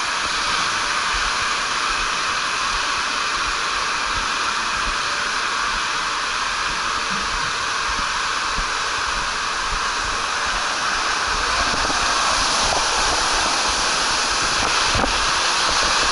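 Water rushing through an enclosed water-slide tube around a rider sliding down it: a steady rushing hiss that grows a little louder near the end.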